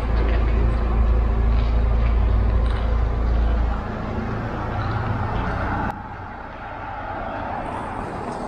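A car's engine running at low speed as it is reversed into a parking space. A heavy low rumble on the microphone eases off about four seconds in, and the overall sound drops abruptly about six seconds in.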